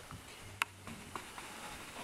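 Quilt and pillows being handled by hands searching under them: a faint rustle with a sharp click about a third of the way in and a few lighter ticks after.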